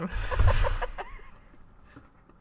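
A woman laughing: a short breathy burst of laughter in the first second that quickly fades out.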